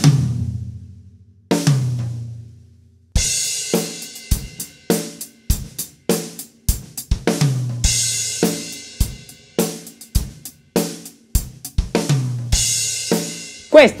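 Acoustic drum kit: two low floor-tom strokes ring out, then a short fill of single strokes on snare and tom is played about three times, each round opening with a cymbal crash. The closing right-hand strokes on the floor tom are played too softly: the fill as it came out in the studio recording, where those weak strokes vanish beside the loud snare and tom hits.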